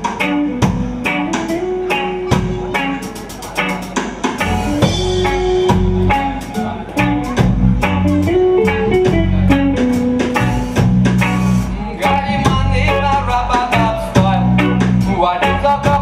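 Live reggae band playing a song: electric guitars, bass guitar and drum kit keep a steady beat under a melodic line.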